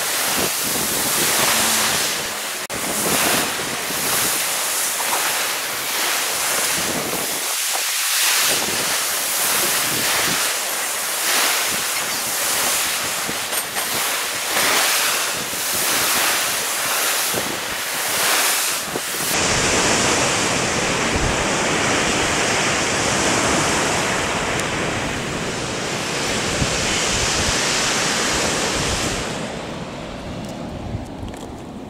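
Sea surf breaking and washing against the rock armour of a harbour breakwater, in repeated swells, with wind noise on the microphone. About two-thirds of the way through, the sound changes to a steadier, deeper rush.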